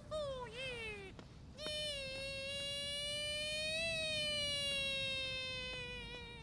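Traditional Chinese opera-style singing by a high voice: a short sliding phrase that falls away, then one long held note lasting about five seconds that rises a little and slowly sinks.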